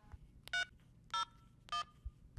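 Three short smartphone keypad touch tones, about half a second apart, as a PIN is keyed in on the phone's dial pad in answer to an automated phone menu.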